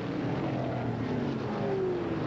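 USAC Silver Crown open-wheel race car engines running at speed on a paved oval. In the second half one engine note falls steadily in pitch.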